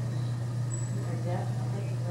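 A steady low hum with indistinct people's voices over it, and a brief thin high note about a second in.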